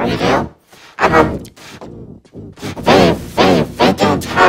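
A person's voice talking in short phrases, with a quieter pause about two seconds in.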